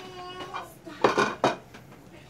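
Ceramic bowl and plate knocking and clinking together as they are picked up and moved, a quick cluster of sharp knocks about a second in.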